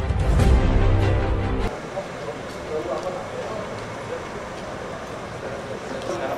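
The end of a news intro jingle: a loud, bass-heavy closing hit that cuts off abruptly just under two seconds in. Then comes outdoor background noise with people talking at a distance.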